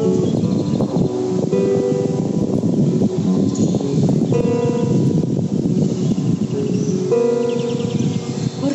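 Solo classical guitar playing a slow instrumental passage: chords struck every few seconds and left ringing, with plucked notes between them.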